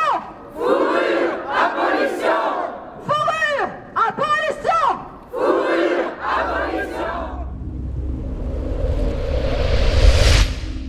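Street protesters chanting a slogan in call and response: a lead voice shouts two short phrases, then the crowd answers in unison, and the pattern repeats once. From about six seconds in, a low rumble and a rising whoosh swell up to a peak at the end, a transition sound effect.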